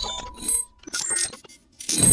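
Channel logo intro sting made of short bursts of glitchy electronic sound effects. A steady beep stops a little under a second in, and the loudest burst comes at the end.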